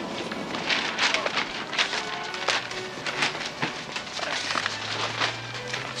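Bustle of a crowded shop: paper shopping bags and parcels rustling, with footsteps and many small knocks and clicks. Soft background music runs underneath, with a low held note coming in past the middle.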